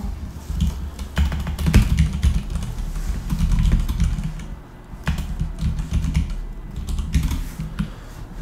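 Typing on a computer keyboard: a quick run of keystroke clicks with a short pause about halfway through.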